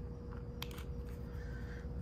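Quiet workshop room tone with a faint steady tone, and one small sharp click about half a second in as an XT60 connector is pushed into a handheld battery meter.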